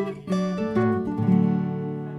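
Two acoustic guitars playing the closing strums of a song, the last chord left ringing.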